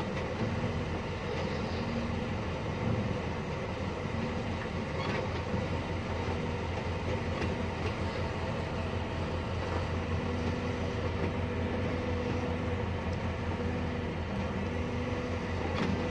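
A vehicle driving steadily over a rutted, snow- and slush-covered road: an even engine hum with tyre and road rumble, unchanging throughout.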